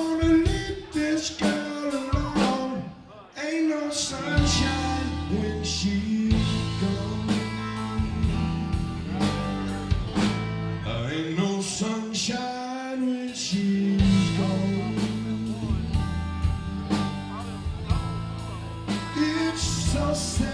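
Live blues-rock trio playing: electric guitar, electric bass and a drum kit, with a man singing lead, and a brief drop-off in the playing about three seconds in.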